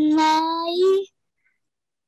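A child reading Greek aloud slowly, drawing one word out for about a second in an almost sung voice.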